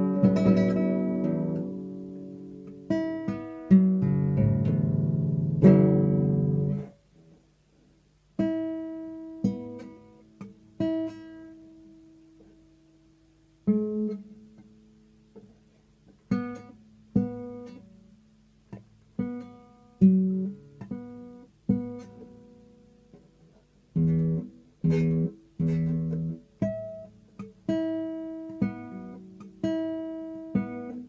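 Nylon-string classical guitar played solo: strummed chords for about the first seven seconds, which stop abruptly, then single plucked notes that ring out and die away one by one, coming quicker near the end.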